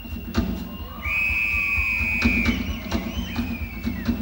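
Live rock band sound in a hall: a high, steady whistle-like tone held for about a second and a half, over a low, pulsing rumble, with a sharp hit just under half a second in.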